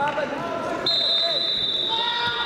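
Voices calling out in a large sports hall during a wrestling bout. Just under a second in, a steady high-pitched tone starts abruptly and holds.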